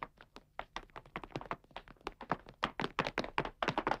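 Cartoon sound effect of running footsteps: a rapid, uneven run of light taps that grows louder towards the end.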